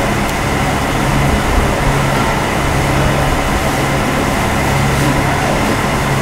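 Steady background noise with a low hum, picked up through the stage microphone, with no voice in it.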